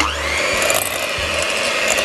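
Electric hand mixer starting up and running, its twin beaters churning cubes of butter in a glass bowl. The motor's whine rises in pitch over the first half second as it spins up, then holds steady.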